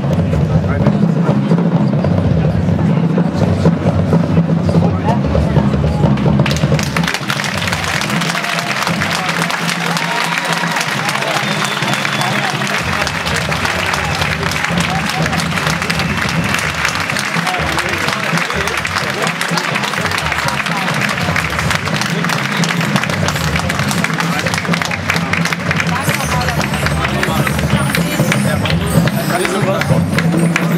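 Audience applause in a large sports hall, breaking out about seven seconds in and carrying on steadily as the drum corps leaves the floor.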